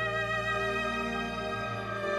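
Solo violin holding one long note with vibrato over a sustained string orchestra accompaniment, moving to a new note near the end.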